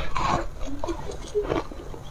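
Close-miked mouth sounds of a bite of ice being eaten: a loud bite at the start, then chewing with several short crunches and wet sucking squeaks.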